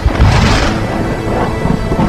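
Thunder sound effect: a sudden crack that fades into a low rolling rumble over about a second, laid over background music.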